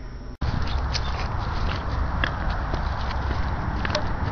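After a sudden cut from quieter room tone about half a second in, steady wind rumble on the camera microphone outdoors, with scattered small clicks and taps.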